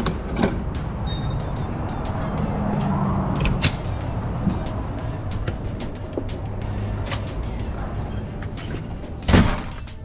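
Clicks as a motorhome's fuel filler cap is fitted, then scattered knocks as someone climbs aboard, and a loud bang near the end as the motorhome's door is shut, all over a steady low hum.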